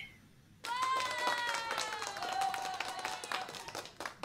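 Short clapping with a high cheering voice, starting about half a second in and lasting about three seconds, the voice's pitch slowly falling.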